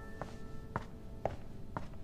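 Footsteps on a wooden floor: four even steps, about two a second, as a man walks away. Faint held piano notes sound underneath.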